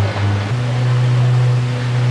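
Cruise boat's engine running steadily under water and wind noise; its low note steps up in pitch about half a second in as the boat gets under way.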